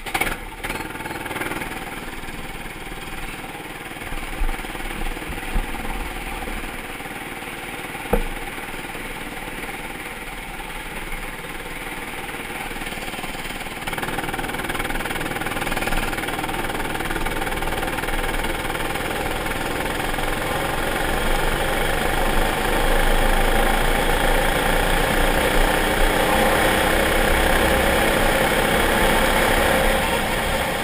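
Rental go-kart engine running under throttle, recorded on board, growing louder about halfway through and again later as the kart gets up to speed on the track. A single sharp click about eight seconds in.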